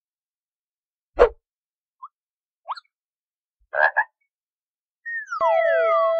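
Edited-in sound effects: a sharp hit about a second in, two short rising chirps, then two quick noisy bursts. Near the end, falling glides lead into a held musical note as the music begins.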